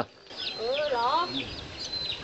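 Domestic chickens clucking, with short high chirps and a wavering call that rises and falls.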